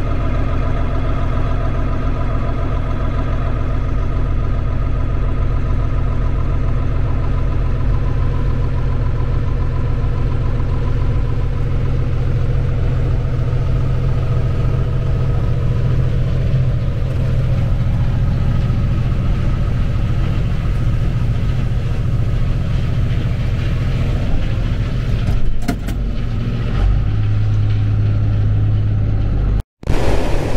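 John Deere 9400 combine's diesel engine and threshing machinery running steadily under load while harvesting corn, a continuous drone. The sound shifts briefly near the end and cuts out just before the end.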